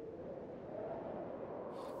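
A faint, soft drone of hushed noise, centred low-mid and without any clear pitch, swelling gently through the middle and easing off near the end.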